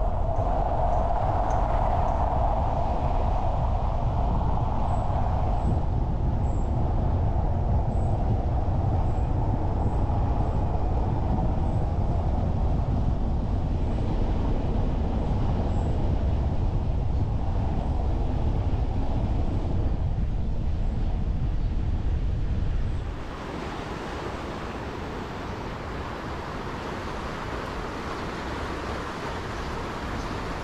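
Car driving over cobblestones: a steady, loud rumble of tyres and engine. About 23 seconds in it cuts off suddenly and a quieter, steady hiss takes over.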